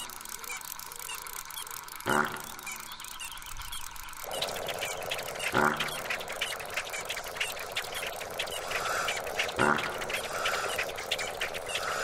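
Airship sound effect over birdsong: a soft whoosh returns every few seconds and a steady hum joins about four seconds in, while birds chirp throughout.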